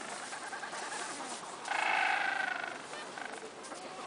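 Adélie penguin giving one call, a pitched cry of about a second near the middle, falling slightly at the end.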